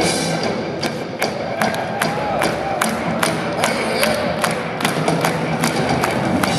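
Rock band playing live through a PA in a theatre, an instrumental stretch with no singing, driven by a steady beat of sharp percussive hits about two and a half a second from about a second in.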